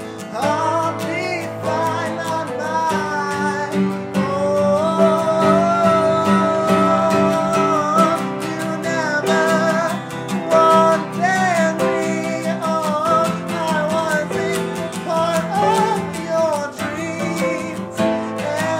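Acoustic guitar strummed with upright piano chords, and a man singing a slow love song over them, holding a long note partway through.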